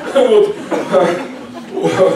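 A man chuckling a couple of times into a handheld microphone, with a few half-spoken sounds mixed in.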